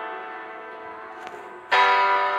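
Background piano music: a chord fades away slowly, and a new chord is struck near the end.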